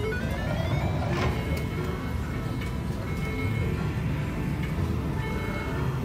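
Cleopatra Keno video keno machine playing its electronic win jingle, a run of rising stepped tones, as the bonus win is added to the credit meter. A steady low background rumble sits underneath.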